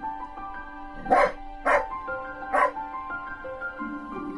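Background music with a steady melody, over which a dog gives three short barks during play, about a second, a second and a half and two and a half seconds in.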